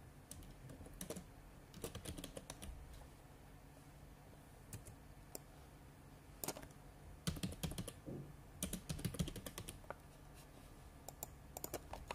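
Computer keyboard being typed on in bursts of keystrokes with short pauses between, the busiest run about halfway through.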